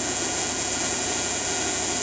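Steady running noise from the alternator-driven Tesla coil rig, an even mechanical hum under a strong high hiss, unchanging across the two seconds.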